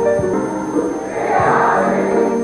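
Romantic ballad played by a band in a passage between sung lines: sustained chords over a bass line, with a cymbal wash swelling about halfway through.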